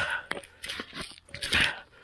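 A man laughing breathily in short bursts, with some rustling and clicks.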